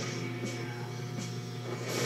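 Background music from an action film's fight-scene soundtrack, a steady sustained score playing under the scene.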